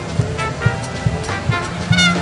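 Live brass band playing an instrumental, with trumpets and saxophone carrying the tune over a steady low beat of about two thumps a second.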